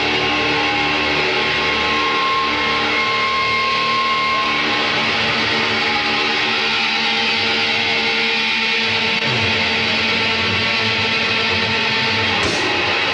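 A thrash/death metal band playing live: distorted electric guitars holding long chords over bass and drums, loud and even throughout.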